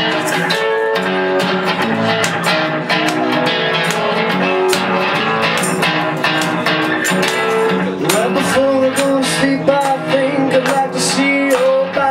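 Guitar played live, picking and strumming chords, with a sustained, wavering vocal line joining about two-thirds of the way through.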